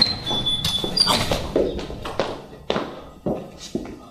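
Hurried footsteps on a hard floor, about two steps a second.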